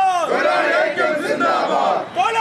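A group of men shouting a protest slogan together in Malayalam, their voices overlapping as they answer a single lead voice.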